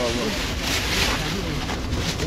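Clear plastic bags rustling and crinkling as seafood is bagged up, brightest around the middle, over a low wind rumble on the microphone and background chatter.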